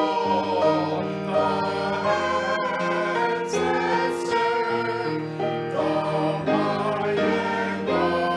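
Small mixed choir of men's and women's voices singing, moving from one held note to the next.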